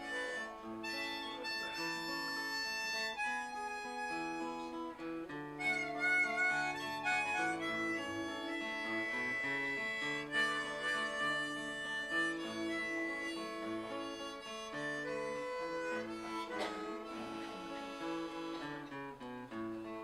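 Harmonica in a neck rack playing a melody in long held notes over strummed acoustic guitar chords, one player on both: the instrumental introduction to a folk song before the singing begins.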